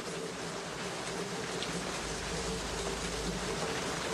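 Steady background hiss with a faint low buzzing hum: the room tone of an office during a pause in the dialogue.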